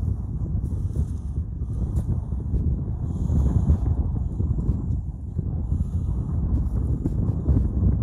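Wind buffeting the microphone in a steady low rumble, with faint rustling as a disposable face mask is unwound from a hand.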